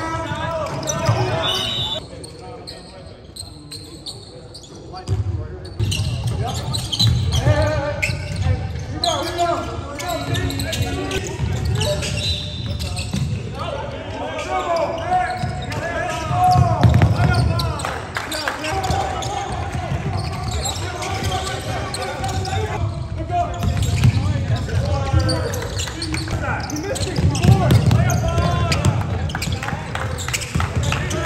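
A basketball bouncing and players moving on a hardwood gym floor during play, with players' voices calling out across the court. It all echoes in a large gym.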